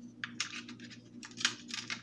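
Light clicks and clatter of a metal sorting tray being picked up and handled, in two short flurries: one just after the start and a longer one past the middle.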